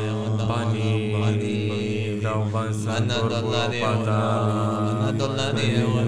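Men chanting in a mock meditation mantra over a steady low drone, with the word "bani" (money) intoned a couple of seconds in.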